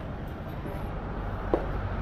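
Footsteps on stone paving at a steady walking pace, one soft knock about every three-quarters of a second, over a steady low background rumble.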